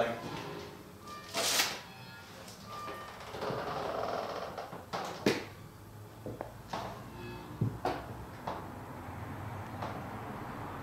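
An old wooden panelled door being opened: a soft scrape, then several sharp clicks and knocks from the latch and door over the next few seconds.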